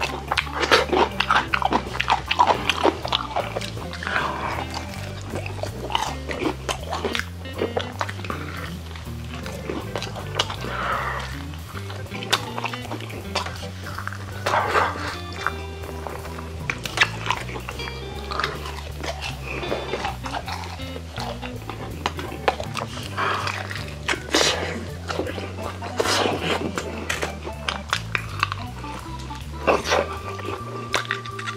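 Close-up chewing and biting of fried chicken, with many short crackles of crunching bites, over background music.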